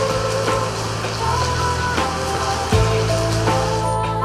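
Background music: held notes over a steady bass line, the chord changing about a second in and again near the three-second mark.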